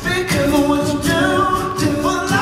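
All-male a cappella group singing in close harmony through stage microphones, voices only, with a steady beat of vocal percussion about twice a second.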